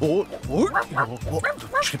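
A cartoon animal character making a quick run of short, high yapping calls, several a second.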